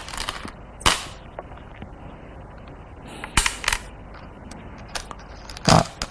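Go stones being placed on a wooden Go board: about five sharp clacks, spaced irregularly.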